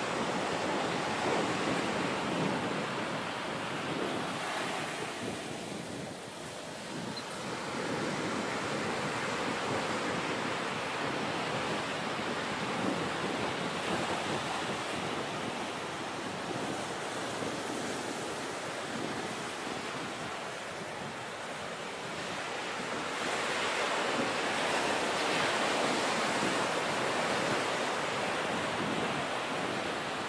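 Ocean surf washing onto a beach, with some wind on the microphone; the rush of the waves eases and swells again, loudest a few seconds before the end.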